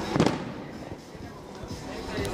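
A single sharp bang or knock just after the start, followed by quieter background noise.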